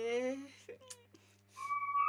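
A brief rising vocal sound at the start, then a steady high whistle-like tone that comes in about one and a half seconds in and holds.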